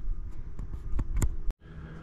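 Low handling rumble with a few light clicks, cut off abruptly about one and a half seconds in, then quieter room tone.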